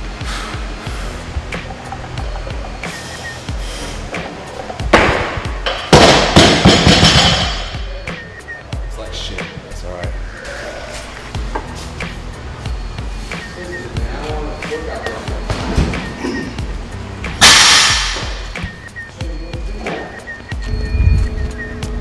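Gym noise under background music: loud metal clanks and crashes of barbells and weights, about five to seven seconds in and again near seventeen seconds.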